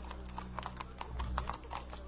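Typing: rapid, irregular key clicks over a steady low hum.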